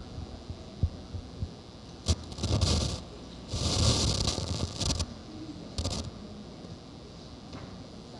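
Handheld microphone handling noise: a few light taps, then several rustling, scraping bursts, the longest about a second and a half.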